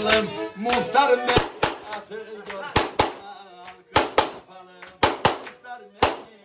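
Black Sea kemençe playing a bending melody over a steady drone, with a string of sharp percussive hits, often in quick pairs, about once a second.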